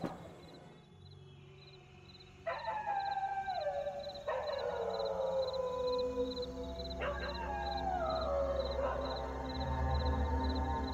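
Dog howling: after a quiet start, three long howls that each slide down in pitch and overlap one another, over a faint high chirp repeating about twice a second.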